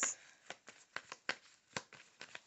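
Tarot cards being shuffled by hand, with irregular sharp card snaps about four a second.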